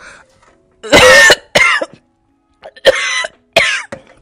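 A woman coughing after sipping a salt-water flush drink, four coughs in two pairs, the first pair about a second in and the second near the end: she is choking on the salty drink.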